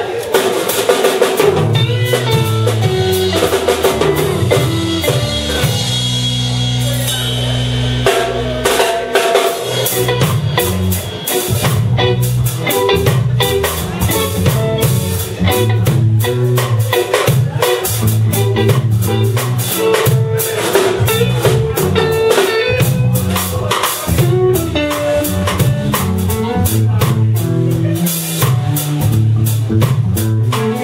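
Live band playing: drum kit, electric guitar and electric bass guitar, with drum hits and a repeating bass line throughout.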